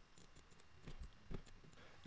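A few faint, scattered clicks of a computer keyboard and mouse over near-silent room tone.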